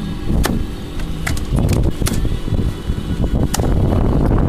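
Wooden fish club striking a king salmon's head on a boat deck to kill it: about four sharp knocks spread over the few seconds, over a steady low rumble.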